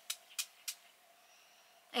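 Perfume atomiser sprayed three times in quick succession, short hissing puffs about a third of a second apart.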